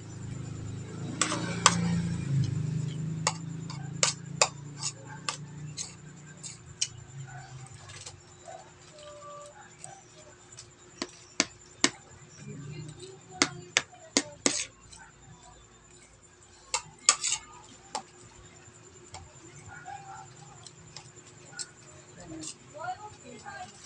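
A metal spoon clinking and scraping against a plate of rice in sharp, irregular clicks, some in quick pairs, while a person eats and chews.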